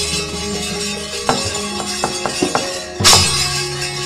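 Javanese gamelan accompaniment for wayang kulit: sustained ringing bronze tones, cut by sharp metallic clashes of the dalang's kepyak (struck metal plates), the loudest about three seconds in.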